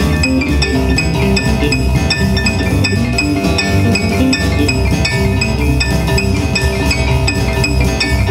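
Live blues band playing an instrumental passage: electric keyboard, electric guitar, electric bass and drum kit, with a steady beat ticked out on the cymbals.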